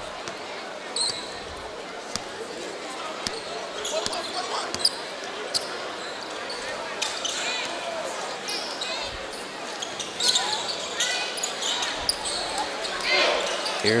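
Arena ambience at a basketball game: a basketball being dribbled on the hardwood court, with scattered sharp bounces, and sneakers squeaking, over steady crowd chatter. It grows louder in the second half as play resumes.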